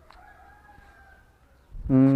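Faint rooster crow: one long call lasting about a second and a half.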